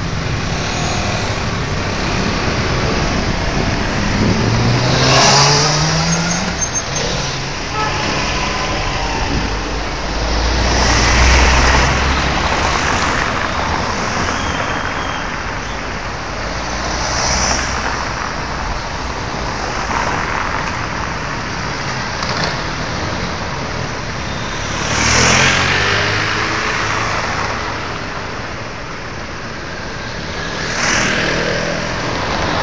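City street traffic: cars and vans driving past close by, one after another. The loudest pass-bys come about 5, 11, 17 and 25 seconds in, the first with an engine note rising as the vehicle speeds up.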